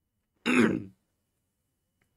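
A man clearing his throat once, a short gruff burst of about half a second.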